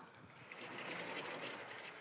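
Chalk scratching on a blackboard as equations are written: a faint, steady scratching that starts about half a second in and fades near the end.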